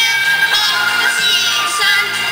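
A boy singing into a microphone over a musical accompaniment, his voice wavering and gliding between held notes.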